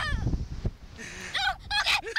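Wind rumbling on the microphone of riders flung through the air on a slingshot ride, then high-pitched wavering shrieks and laughter from the riders in the second half.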